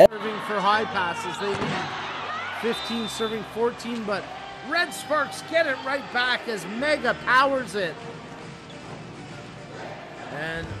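Indoor volleyball match sound: sharp ball strikes, several between about one and five seconds in, among players' and crowd voices.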